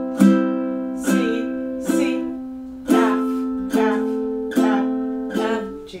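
Ukulele strummed slowly in an even beat, one chord a little under every second, each left to ring. A C chord is strummed three times, then it changes to an F chord about three seconds in, which is strummed four times.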